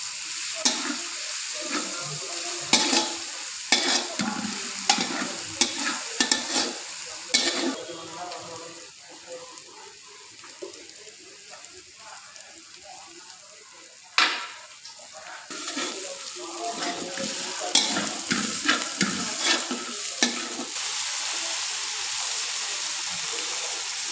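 Chopped onion and garlic sizzling in hot oil in an aluminium kadai, stirred by a steel spatula that scrapes and clinks against the pan. The stirring stops for several seconds in the middle, leaving a quieter sizzle and one sharp knock, then starts again, and near the end the sizzle turns steady.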